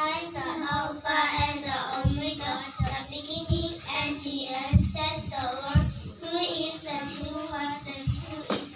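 Young girls' voices reciting together in a sing-song chant through handheld microphones and a PA, with a few short low thumps.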